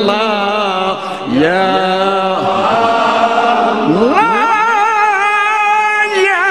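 A solo male voice chanting a devotional Arabic supplication unaccompanied, in an ornamented Persian style with heavy vibrato. About four seconds in, the voice glides upward into a long held high note.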